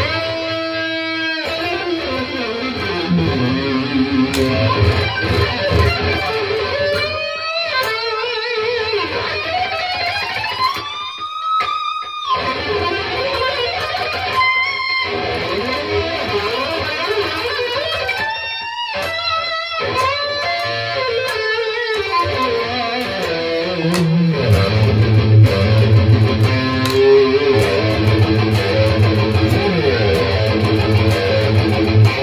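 EVH Wolfgang Standard electric guitar played through a HeadRush pedalboard amp model with reverb and tape echo. It plays lead lines with string bends and wavering held notes through the middle, then heavier low-string playing from about three-quarters of the way in.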